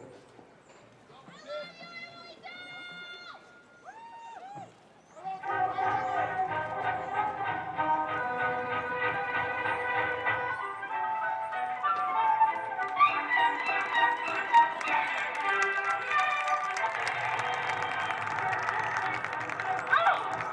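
Marching band starting its field show: a few soft held notes, then the full band of brass, woodwinds and drums comes in about five seconds in, much louder, and plays on with sharp percussion hits.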